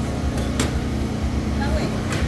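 A steady low machine hum under faint background voices, with two sharp clicks about half a second in.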